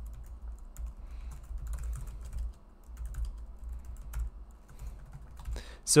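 Computer keyboard typing: a run of irregular key clicks as a line of code is typed, over a steady low hum.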